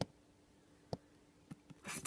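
A phone being handled and repositioned as it slips: a few faint knocks and taps against it, the sharpest right at the start and about a second in, then a brief rubbing scrape near the end.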